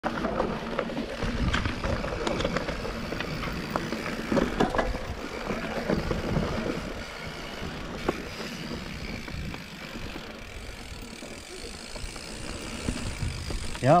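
Mountain bike riding down a dirt forest singletrack: steady tyre and riding noise with sharp knocks and rattles from the bike over bumps, busiest in the first few seconds and quieter and smoother after about eight seconds.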